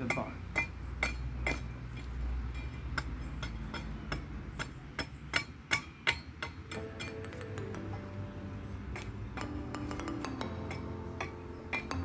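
A small axe striking the green mulberry pole near its base in quick repeated chops, a few a second, some with a short metallic ring, as it strips the bark. Background music comes in about halfway through.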